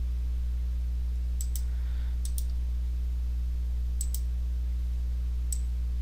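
Several sharp clicks of a computer mouse, some in quick pairs like double-clicks, over a steady low electrical hum.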